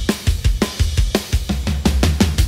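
Recorded drum kit playing back in a mix: a busy run of kick and snare hits, several a second, over a steady low rumble. The toms are pitched down and given boosted attack and sustain with transient-shaping plugins, for a fatter, more resonant sound.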